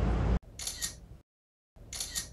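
Two short, high-pitched double clicks about a second and a quarter apart, set into dead silence: an edited-in click sound effect.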